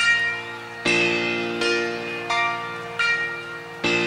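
Piano chords from a live rock performance, struck about once every three-quarters of a second, each ringing and fading before the next.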